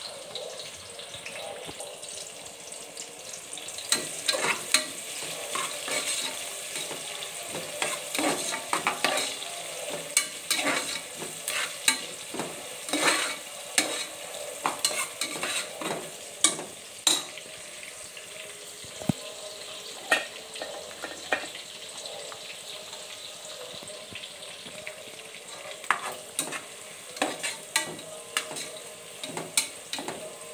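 Sliced onions sizzling in hot oil in a pressure cooker pot, with a ladle scraping and clicking against the metal as they are stirred. The stirring clicks come in busy runs from about four seconds in until past halfway, and again near the end, over a steady sizzle.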